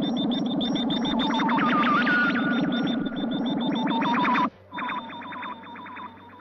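Synthesized electronic sound effect for a missile launch system starting up: a rapid train of repeating bleeps over a low pulsing drone. It cuts off sharply about four and a half seconds in, and fainter bleeps carry on after.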